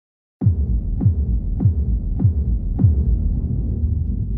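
A low, steady soundtrack drone with five deep bass hits, each dropping in pitch, a little over half a second apart like a slow heartbeat. It starts abruptly just under half a second in.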